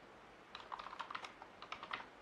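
Computer keyboard being typed on: a quick run of about a dozen faint key clicks, starting about half a second in, as a terminal command is entered.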